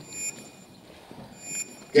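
A pause in a man's amplified speech: low background hiss with faint, thin high-pitched tones that come and go. His voice returns near the end.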